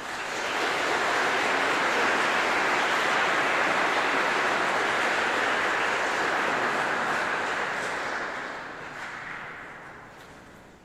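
Large audience applauding. It swells within the first second, holds steady, then dies away over the last couple of seconds.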